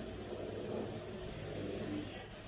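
Low, steady background rumble with a faint hum, swelling slightly through the middle.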